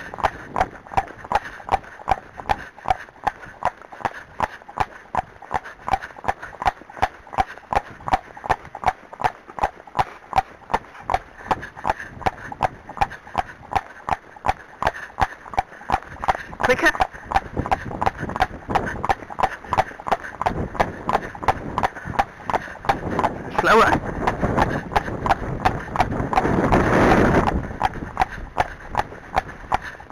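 Friesian horse's hooves on a paved lane at a trot: a steady, even clip-clop of about two and a half hoofbeats a second. A louder rush of noise swells briefly near the end.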